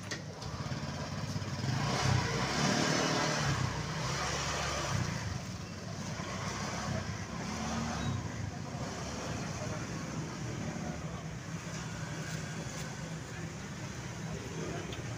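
A motorcycle engine running as it rides past, loudest about two to four seconds in, over background voices.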